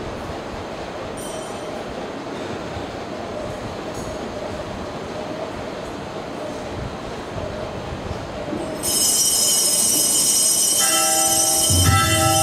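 Bells ringing loudly, starting suddenly about three-quarters of the way in over a steady background hiss; lower musical notes join near the end.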